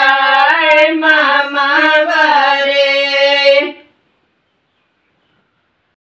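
Group of women singing a Himachali wedding song (ghodiyan, sung for the groom's side) without instruments, ending on a long held note. The singing cuts off suddenly about four seconds in.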